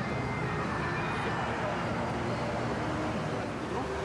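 Steady noise of traffic passing on a busy road, with faint voices in the background.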